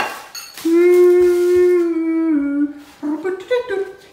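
A person humming: one long held note that steps down in pitch about two seconds in, then a few short notes going up and down.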